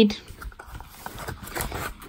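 Faint, irregular rustling and scraping of paper and cardboard as hands pull a folded paper leaflet out of a cardboard product box.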